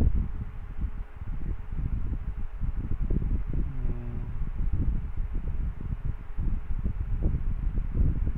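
Low, uneven rumbling background noise with no speech from the lecturer, with a faint voice briefly in the background about three seconds in.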